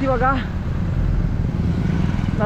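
Road traffic passing close to a moving bicycle: a car and a motorcycle go by over a steady low rumble of wind and road noise on the microphone. A voice is heard briefly at the start.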